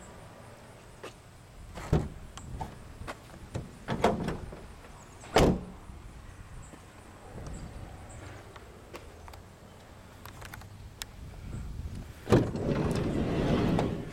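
The rear cargo door of a 2010 Ford Transit Connect van is closed: a few lighter knocks, then one loud slam about five seconds in. Near the end, a sliding side door clunks open and rolls back for about a second and a half.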